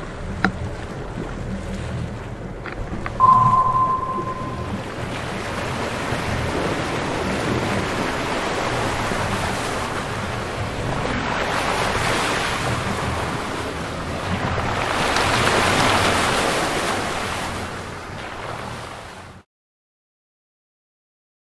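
Hummer H1 wading through a muddy pond: the wash and splash of water pushed aside by the truck over a low engine rumble, with wind on the microphone, swelling twice in the second half. A short high beep about three seconds in, and the sound cuts off suddenly just before the end.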